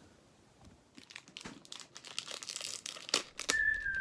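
Plastic pouch of pancake mix being handled, crinkling and rustling after a quiet first second, with a sharp click about three seconds in. A music melody starts just before the end.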